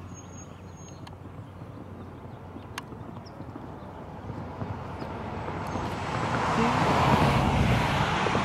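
A road vehicle approaching, its tyre and engine noise rising over the last few seconds, over a steady outdoor background.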